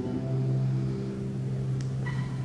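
Classical guitar and oud duo holding a low plucked note that rings on and slowly fades, with faint higher notes above it and a light click near the end.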